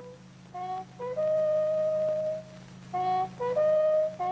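A bugle call on a brass horn: a few quick short notes lead into a long held note, then the same figure comes again near the end.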